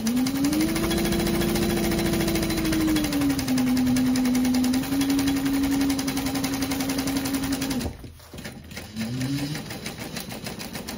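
Pink Juki industrial sewing machine stitching a long basting stitch through the backpack layers around the gusset. Its motor speeds up at the start, eases to a slower speed about three seconds in, and stops about eight seconds in. A short burst of stitching starts again near the end.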